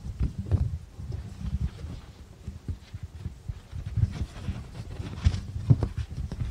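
A book handled close to a microphone as its pages are turned: irregular low knocks and bumps, with a few short rustling clicks.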